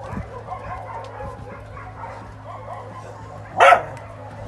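Dogs making faint whines and yips, then one short, loud bark near the end.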